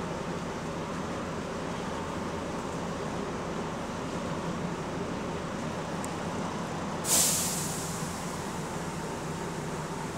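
Double-decker bus engine running steadily, heard from inside the bus, with a sudden loud hiss of released compressed air from the bus's air system about seven seconds in that fades over about a second.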